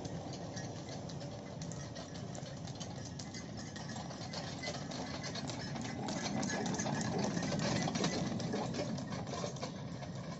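A bullock cart heavily loaded with stones rolling on an asphalt road: a continuous rattle of the wheels and load. It grows louder as the cart comes close, loudest about seven to eight seconds in, then eases off.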